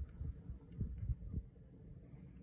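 Irregular low thumps and rumble close to the microphone, several a second, with a few faint clicks above them.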